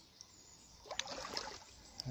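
Faint trickle of a shallow stream, with a few light clicks about a second in.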